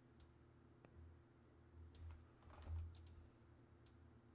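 Near silence with a handful of faint, scattered computer keyboard and mouse clicks over a low steady hum, and a soft low bump about two and a half seconds in.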